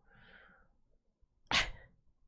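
A person sneezes once, sharply, about one and a half seconds in, after a faint breath.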